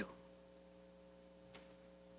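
Near silence: room tone with a faint steady electrical hum and a single faint tick about one and a half seconds in.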